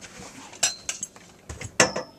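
A few light clicks and clinks of hard objects knocking together, the loudest near the end followed by a brief high metallic ring.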